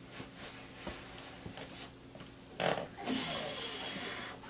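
A person's effortful breathing while straining into a crane pose: a few soft taps, a sharp breath about two and a half seconds in, then a long hissing exhale.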